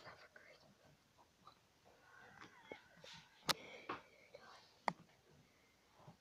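Quiet room with faint whispered muttering and two sharp knocks, about three and a half and five seconds in.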